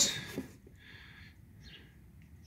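Faint, high chirps of a bird in the background, a short run of them about half a second in and a couple more near the end.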